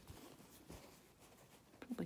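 Near silence, with a few soft clicks and a faint rustle of cotton fabric in a wooden embroidery hoop being handled.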